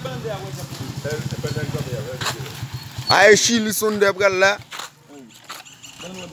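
A small engine running with a fast, even low pulse, which cuts out about four and a half seconds in; voices talk over it near the middle.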